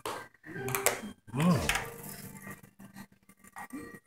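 A few light clinks and knocks of kitchenware and sprinkle jars being handled on a stone countertop, with one short spoken "oh" about a second and a half in.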